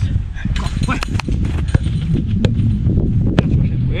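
A football being touched and struck on an artificial pitch, several sharp knocks over a loud, steady low rumble.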